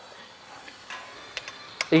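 Ford Barra straight-six being turned over by hand with a breaker bar on the crankshaft pulley: faint mechanical turning sounds with a few sharp clicks near the end. The cylinders can still be heard making compression; only the one with the broken conrod is dead.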